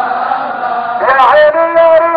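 A crowd of men chanting together at a protest. About a second in, one loud male voice takes over with a rising, then held, sung line.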